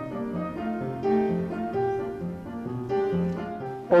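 Upright piano played as a four-hand duet: a melody over a bass line of alternating low notes.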